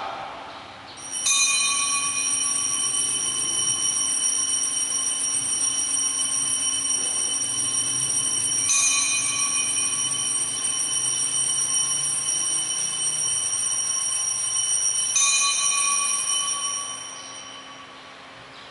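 Altar bells rung in three long peals about seven seconds apart, each a sustained bright ringing, fading out near the end. They mark the elevation of the chalice at the consecration.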